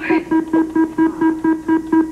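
The Price Is Right Big Wheel spinning, sounding a rapid, even run of short beeping tones, about six a second.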